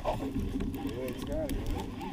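A baitcasting reel being handled and cranked as a rod is taken up on a bite: light, irregular clicks over a low rumble, with a faint, muffled voice in the middle.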